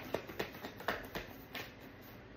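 Tarot cards being shuffled by hand: a run of about six short, sharp card snaps and flicks, thinning out near the end.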